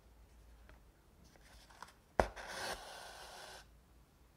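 An embroidery needle pulled through a stretched, painted art canvas, giving a sharp pop about two seconds in, then the thread drawn through the canvas with a rasping hiss for about a second and a half.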